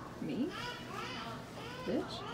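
Children's voices and chatter, their pitch swooping down and up a few times.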